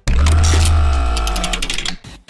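Short musical transition stinger: a sudden deep bass hit under several held tones, then a rapid run of sharp ticks, cutting off abruptly near the end.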